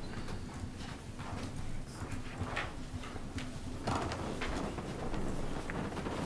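Sheets of paper being shuffled and handled near the meeting microphones, heard as rustles and a series of soft knocks roughly every two-thirds of a second over a low steady room hum.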